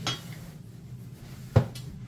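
Dishes knocking together twice, a light clink at the start and a louder knock about a second and a half in, over a low steady hum.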